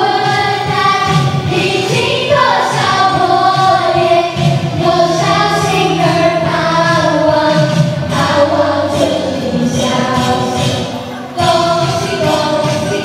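A group of voices singing a Chinese New Year song together into microphones over backing music, with a short break near the end.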